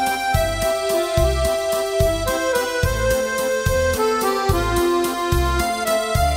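Roland digital button accordion playing a slow instrumental melody in long held notes, over a bass line that returns at a steady pace.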